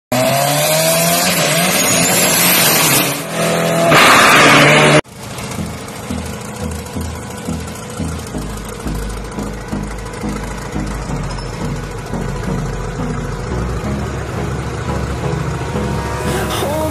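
A turbocharged diesel dragster engine revving loudly for about five seconds, its pitch rising, then cut off suddenly. Electronic music with a steady beat and deep bass follows.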